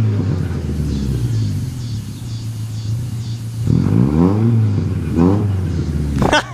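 Volkswagen Gol engine running with a steady low note, then revved twice near the end, its pitch sweeping up and back down each time.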